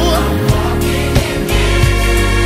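Gospel worship song: a sung vocal line over a band with bass and a steady drum beat.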